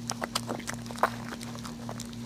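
Newborn Maltese puppy sucking, heard as a run of small irregular wet clicks, over a steady low hum.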